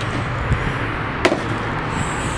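Steady background noise with a dull thump about half a second in and a sharp click or knock a little past a second in.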